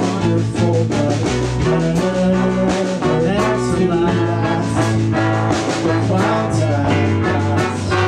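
Live band playing an instrumental passage with a steady beat: electric guitar, keyboard, violin, trumpet, trombone and drums.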